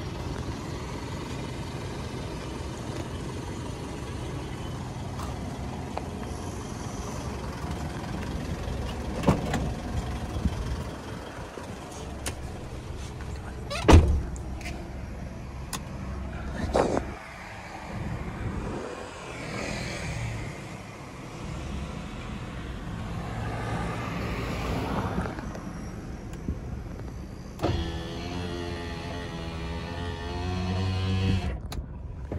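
Steady low hum of a Mitsubishi Strada's 2.5 DI-D diesel engine idling, with a few knocks and one loud thud about halfway through. Near the end a wavering pitched tone sets in.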